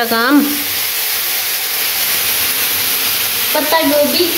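Boiled macaroni sizzling in a steel pot on the stove as it is stirred with a long spoon, a steady frying hiss. A voice is heard briefly at the start and near the end.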